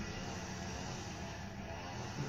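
Steady background noise, an even hiss with a low hum beneath, with no distinct sound events.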